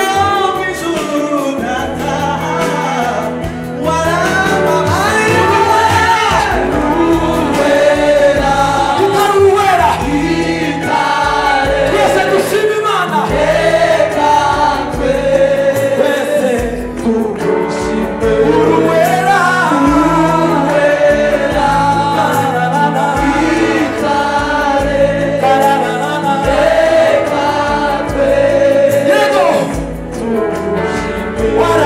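A Rwandan gospel praise song: a mixed choir of men's and women's voices singing together over instrumental accompaniment with a steady bass line and beat.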